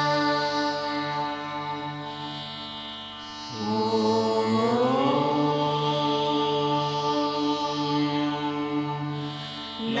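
Hindu devotional chanting with music: long, held, sung notes. A new phrase begins about three and a half seconds in with a smooth rise in pitch, and another starts at the very end.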